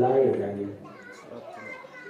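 A man speaking into a microphone, his voice trailing off in the first second, then fainter, higher children's voices chattering in the background.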